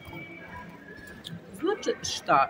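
Shopping-mall background murmur with faint steady music, then a woman's voice starts again near the end.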